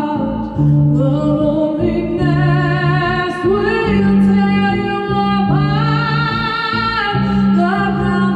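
A woman singing long, sliding notes, with rising glides about halfway through, over a low repeating bass line of held notes about a second each from an electric upright bowed string instrument.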